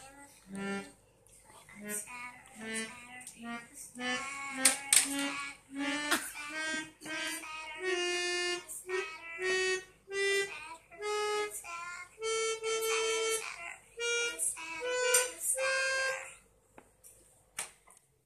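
Small electronic keyboard played one note at a time by a young child, the notes stepping higher and higher in a slow, halting melody.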